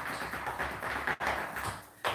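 Rapid tapping of shoes on a tiled floor as a mock drum roll, with a brief break a little past the middle.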